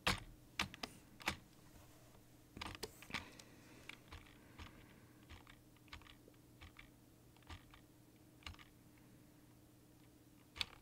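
Computer keyboard keystrokes, irregular and unhurried: a quick cluster of louder clicks at the start and again about three seconds in, then scattered lighter taps, over a faint steady low hum.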